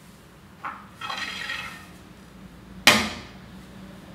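A walking cane picked up from a wooden stage floor: a small click, a short scraping rustle, then one sharp knock of the cane on the floorboards near the end.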